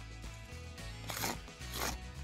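Chalk scraping across gritty asphalt shingle granules in two short strokes, drawing an X to mark a fractured shingle as failed.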